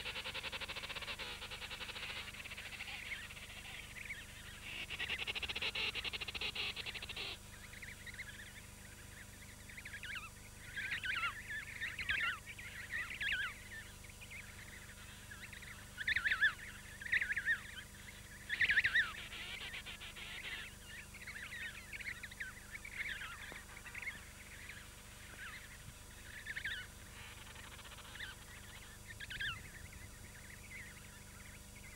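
Emperor penguin chick peeping: many short, high, wavering whistles in quick runs, loudest a little past the middle. For the first seven seconds there is only an even high hiss.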